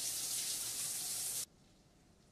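Shower spray running in a loud, steady hiss that cuts off abruptly about one and a half seconds in.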